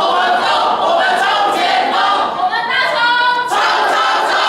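A group of teenage boys and girls singing together without accompaniment, many voices at once. About three seconds in, a note is held for a moment before the singing breaks off.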